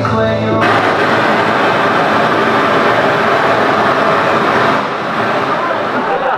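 A bachata song stops about half a second in, and the audience breaks into loud applause and cheering, which eases off near the end.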